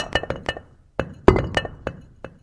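Cartoon sound effects of stone letters dropping onto a stone slab: a quick run of sharp clacks with a slight clinking ring, then a second run of clacks starting about a second in.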